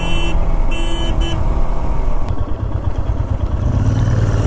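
Royal Enfield Himalayan single-cylinder motorcycle engine running under the rider, with wind and road noise, as the bike rolls onto a dirt hilltop. Near the end the engine settles to a steadier low note as the bike slows to stop.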